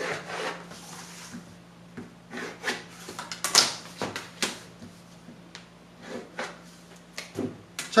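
A ruler and pencil worked over pattern paper on a table: scattered light scrapes, rubs and taps, a few at a time, as lines are drawn and the ruler is moved.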